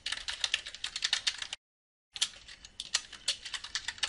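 Fast typing on a computer keyboard: a quick run of key clicks, broken once by about half a second of dead silence a second and a half in.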